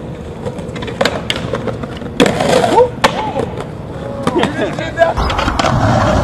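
A skateboard on concrete: sharp clacks and impacts of the board popping and landing, with voices calling out in the middle. From about five seconds in, a steady low rumble of wheels rolling.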